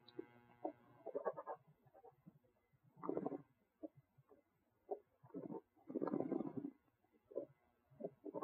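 Faint wine-tasting mouth sounds: red wine swished and gurgled in the mouth in short irregular bursts, the longest a little past the middle.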